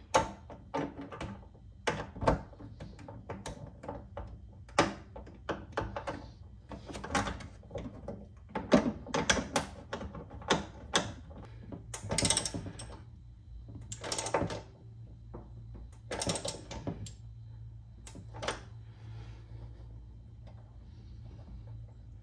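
Hand tool working a bolt on a metal L bracket: a string of irregular clicks and knocks, with three short runs of rapid clicking past the middle, as the bracket screws are tightened down.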